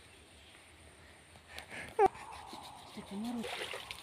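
Soft splashing and trickling of river water as a person washes her legs and feet by hand, scooping water over them, mostly in the second half.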